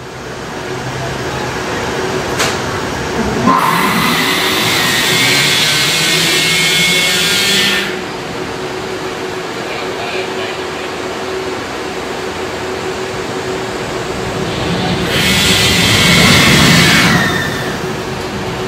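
Linear induction motors of an Intamin Impulse roller coaster screeching as they launch the train, twice, layered over the steady hum of the variable-frequency drive that powers them.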